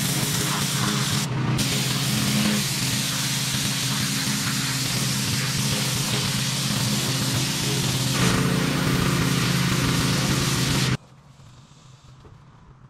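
High-pressure water spraying from a pressure washer wand onto a concrete curb and gutter, a loud steady hiss over the pressure washer's engine running. It cuts off suddenly near the end.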